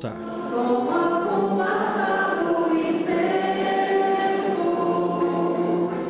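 Church choir singing a slow liturgical chant in long, held notes.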